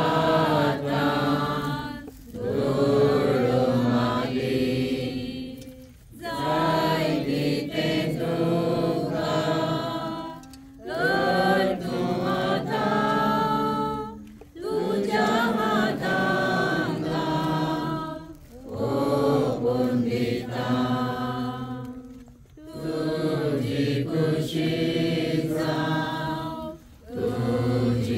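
A group of people singing a slow hymn together in unison, in phrases of about four seconds each separated by short breaths.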